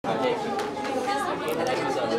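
Background chatter of several people talking at once, with no single voice standing out.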